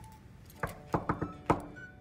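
Knocking on a wooden hotel room door: about five sharp knocks in an uneven rhythm, starting about half a second in.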